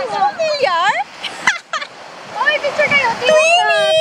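High voices laughing and calling out in sliding, squealing tones, with small waves washing on the shore in the quieter gap between them.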